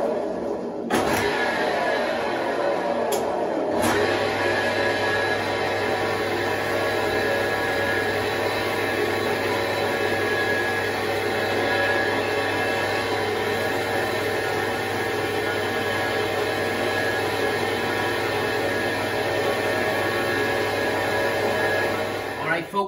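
A wood lathe's electric motor running steadily, spinning a wooden walking stick. It starts up just before and settles into an even hum, with a deeper tone joining about four seconds in.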